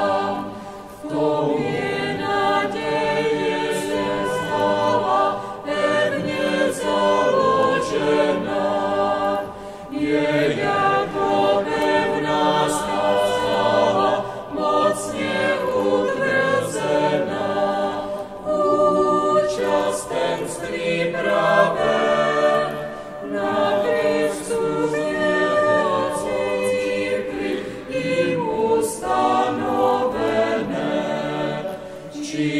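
A choir singing a hymn in a large church, in long phrases with short breaks between them.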